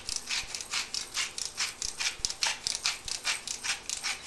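Hand-twisted grinder cracking Himalayan salt crystals, a quick even run of grinding crunches, about five a second.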